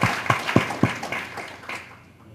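Audience applauding, the clapping thinning out and stopping near the end.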